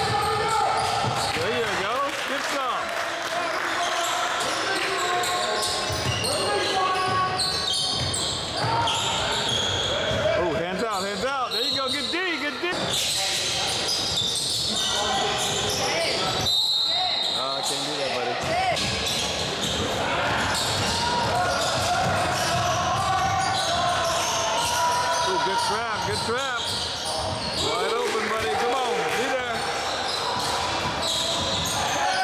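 Basketball dribbled and bouncing on a hardwood gym floor during live play, amid voices of players and spectators in a large echoing gym.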